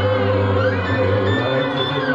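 Live band music: a droning texture of held notes from keyboards and guitar over a steady low note.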